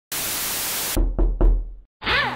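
Logo-intro sound effect: a burst of static hiss that cuts off suddenly about a second in, followed by three quick, deep knocks over a low rumble.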